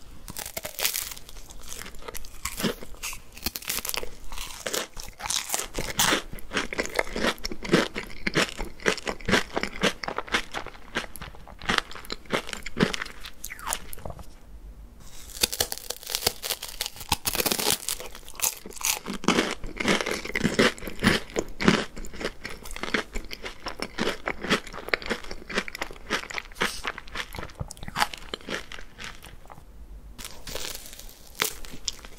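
Close-miked crunching and chewing of a chocolate-coated wafer ice cream cone, crisp bite after bite, with a brief lull about halfway through.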